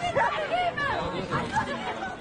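Several voices calling out and chattering at once, the live sound of players and onlookers at a football match.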